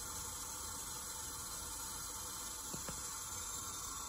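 Steady hiss of water running into a sink from the outlet of a Reynolds-number flow apparatus, at about 1.35 gallons per minute. Two faint clicks come near three seconds in.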